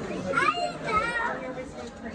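A child's high-pitched voice calling out in two short bursts, about half a second in and again about a second in, over the murmur of other shoppers talking.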